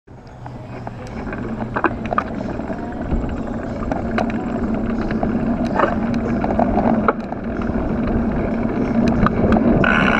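Mountain bike on knobby Schwalbe Hans Dampf tyres rolling over asphalt: steady tyre noise with scattered sharp clicks and rattles from the bike, growing louder as it picks up speed.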